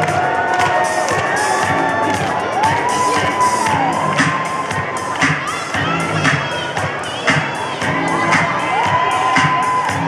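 A group of young children shouting and cheering together, many high voices overlapping in long drawn-out calls.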